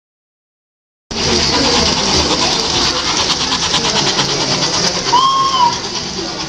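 Silence for about the first second, then Merkur tinplate toy trains running on their metal track with a fast, even clatter. Near the end a short whistled tone rises and falls once.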